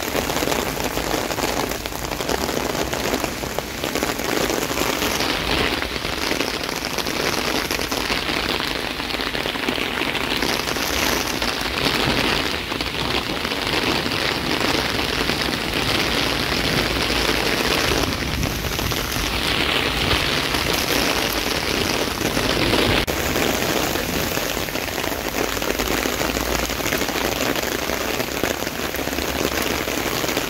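Heavy downpour: rain pouring steadily onto paving, trees and ground, a dense unbroken hiss that grows somewhat stronger in the middle.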